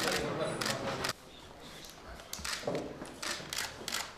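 Press camera shutters clicking, several sharp clicks scattered through the second half, over quiet room sound.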